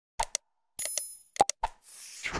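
Subscribe-button animation sound effects: several quick mouse clicks, with a short bell-like ding about a second in, then a whoosh near the end.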